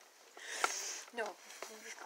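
A sniff through the nose, about half a second long, followed by a short spoken word.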